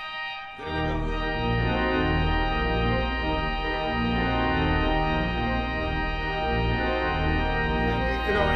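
Organ playing full, sustained chords over a deep pedal bass, coming back in after a brief dip about half a second in. The organ is played from a three-manual drawknob console.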